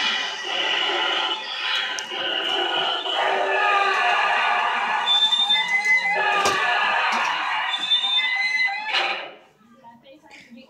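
Cryo Chamber Corpse Halloween animatronic playing its built-in sound effects through its own speaker: a dense, steady electronic soundtrack with a high-then-lower two-note beep about halfway through and again near the end. It stops about nine seconds in as the corpse sinks back into its chamber.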